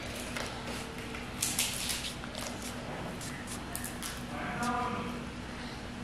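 Quiet room with faint rustles and scrapes of hands on a paper worksheet on a table, over a low steady hum, with a brief faint voice about four and a half seconds in.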